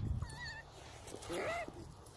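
A puppy whimpering as it resists the leash: two thin whines, a short high one near the start and a lower, arching one a little past halfway.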